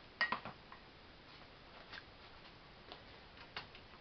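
A few faint clicks and light knocks, several close together in the first half second and a handful more spread through the rest, over quiet room tone.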